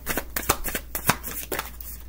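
A tarot deck being shuffled by hand: a quick run of card snaps and slaps, with a couple of sharper ones.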